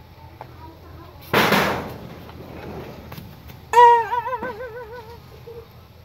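Comedy sound effects. About a second and a half in comes a short, loud burst of noise. Near the middle a loud tone sets in sharply and warbles up and down in pitch for about a second and a half before fading.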